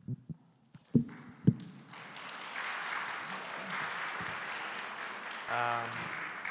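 Audience applauding, building up just after two sharp thumps about a second in and holding steady. A short voiced sound comes near the end.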